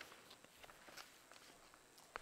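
Near silence: room tone with faint, scattered light clicks and rustles.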